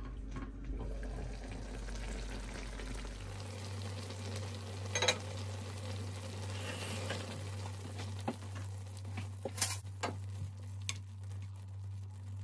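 Noodle stew with tofu and spam sizzling and bubbling in a pan on the hob, a steady hiss broken by a few sharp clicks, the loudest about five seconds in and near ten seconds.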